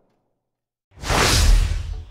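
Whoosh transition sound effect with a deep low rumble, starting about a second in after silence and swelling to a peak before dying away.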